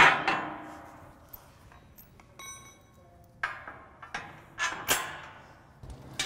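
Metal frame plates and brackets being handled and fitted together: a sharp clank that rings on at the start, a high ringing clink about halfway through, then a few duller knocks.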